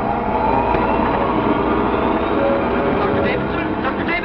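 A loud, steady rumbling drone, a dramatic sound effect, with a whine that rises in pitch during the first second or two. A voice begins near the end.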